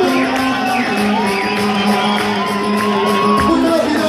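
A live band playing amplified Turkish wedding dance music, with a melody line that holds one long note through the middle over a steady drone. The dancing crowd whoops and shouts over it.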